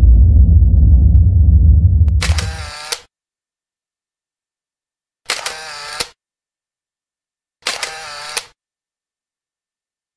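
Logo intro sound effects: a deep rumble that fades out about three seconds in, then three short bright effects, each under a second and opening and closing with a sharp click, roughly two and a half seconds apart.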